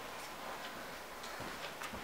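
Quiet room tone with a few faint, irregularly spaced clicks.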